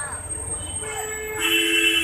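A vehicle horn sounds a long steady tone starting just under a second in, joined about halfway through by a second, lower and louder tone that holds to the end.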